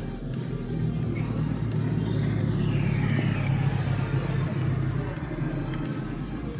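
A motor vehicle passing, a low rumble that swells to a peak in the middle and fades again, with a faint falling whine as it goes by, over background music.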